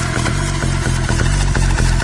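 Minimal techno music playing, carried by a low, buzzing bass line of short repeated notes that sounds somewhat like an engine.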